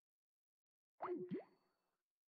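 Skype's call-ended sound: a short electronic jingle of two quick pitch swoops, down and back up, lasting about half a second, about a second in. The call has failed on a busy line.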